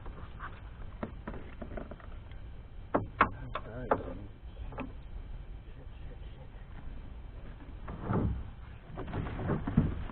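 Knocks and clunks of gear being handled in a small fishing boat, with a cluster of sharp knocks about three to four seconds in and softer rummaging near the end, over a low steady rumble.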